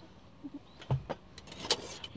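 Stacked enamel tiffin carrier (rantang) being taken apart by hand: a dull knock about a second in, then a few light clinks of the enamel containers and lid against each other and the metal frame, the brightest near the end.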